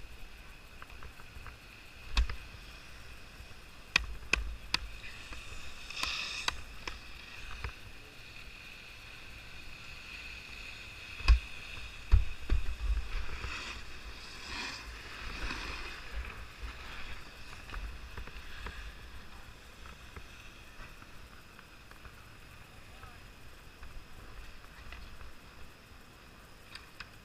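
Skis sliding and scraping over hard-packed groomed snow, with wind buffeting the camera microphone and a few sharp knocks, the loudest a little past eleven seconds.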